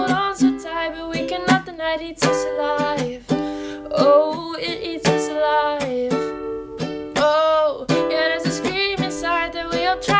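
A woman singing solo while strumming a ukulele, with a steady strummed rhythm under the melody.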